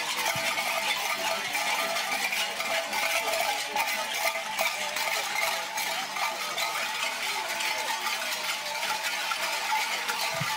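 Dense, steady metallic jingling and clinking, like many small metal jingles or bells shaken at once by moving dancers.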